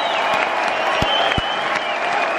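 Concert hall audience applauding steadily, with high, long-held whistles over the clapping and a couple of low thumps about a second in.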